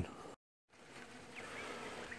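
Faint buzzing of honey bees flying around a sugar-syrup feeder, growing slightly louder toward the end, after a brief cut to silence about a third of a second in.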